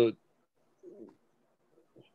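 Speech only: the end of a man's long, held hesitation 'uh', cutting off just after the start, then a faint short murmur about a second in and otherwise near silence.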